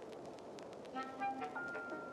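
Sparse, pointillistic avant-garde electronic music in a 1950s serial style: a few short pitched blips about a second in, then a single high tone that starts just past the middle and is held, over faint scattered clicks.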